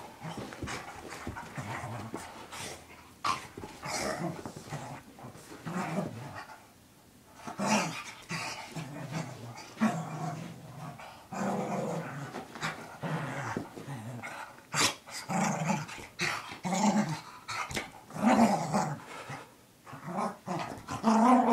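Small dog growling in irregular bursts while rolling and rubbing itself over the carpet, in a post-bath frenzy, with scuffing against the carpet between growls. There is a short lull about a third of the way in.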